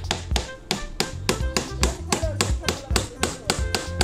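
Claw hammer tapping quickly and repeatedly on wood, several light strikes a second, over background music with a steady bass beat.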